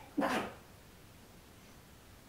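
A single short dog bark, loud against a quiet room.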